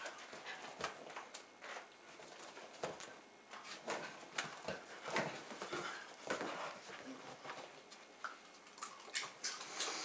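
Faint dog sounds from Jack Russell terriers excitedly begging for food, among scattered small clicks and rustles.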